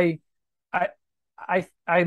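Only speech: a man hesitating, saying "I" several times with short silent pauses between.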